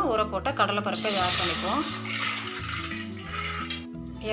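Dry chana dal (split Bengal gram) poured into a metal pot: a loud rush of grains about a second in, tailing off over the next two seconds, over background music.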